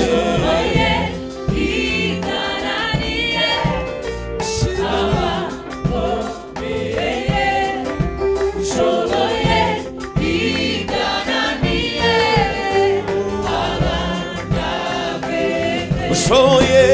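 Mixed choir singing a Kinyarwanda gospel song in parts, over live band accompaniment.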